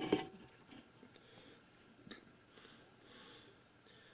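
Quiet room with a man's faint breathing and small movement noises: a short sound right at the start, a click about two seconds in, and a soft breath-like hiss about three seconds in.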